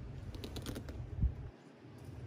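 Wind buffeting the microphone as a low rumble that drops away near the end, with a few light clicks about half a second in and a soft knock just past a second.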